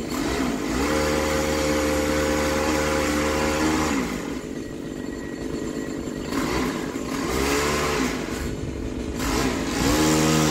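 Small engine of a gas-powered pole saw revving up to cutting speed about a second in and holding for about three seconds, then dropping back to idle. It is blipped up twice more before revving up again at the end.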